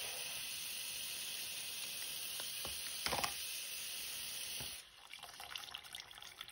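Bathroom sink faucet running, its stream splashing steadily onto a towel barrier lining the basin; the water sound drops off sharply near the end. A brief knock about three seconds in.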